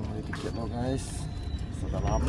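A man's voice speaking briefly, over a steady low rumble.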